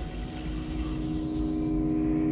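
A sustained drone of several held tones over a low rumble, slowly swelling in loudness: a dramatic music or sound-design swell.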